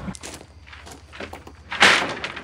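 Low, steady rumble of a pickup truck's engine and road noise inside the cab while driving slowly. A short, sharp burst of noise comes near the end.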